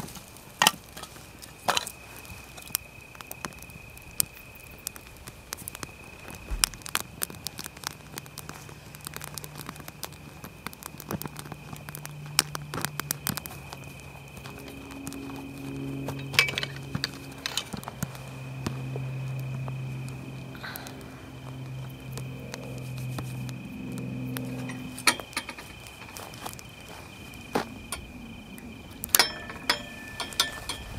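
Wood campfire of split kindling crackling and popping as it catches, with a steady high whine throughout. A low hum comes in about eight seconds in and fades out about five seconds before the end.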